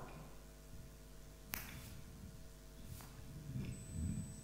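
Two sharp clicks about a second and a half apart, the first louder, over quiet room tone with a steady electrical hum; a faint high-pitched whine sets in near the end.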